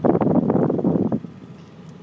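Rustling, crackly handling noise on the phone's microphone for about the first second, stopping abruptly. Under it and after it, the truck's 7.3 L turbo diesel idles quietly, heard from inside the cab.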